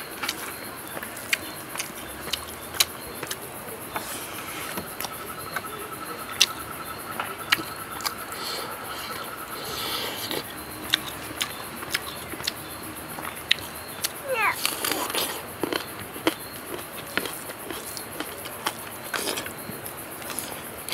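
Close-miked chewing and lip-smacking of someone eating rice and dried eel by hand, with many sharp, wet clicks throughout. A thin steady tone sounds for several seconds from about four seconds in, and a short rising glide comes about three quarters of the way through.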